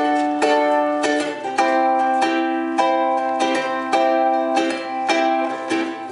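Ukulele strumming chords as an instrumental intro, a steady rhythm of strokes nearly two a second.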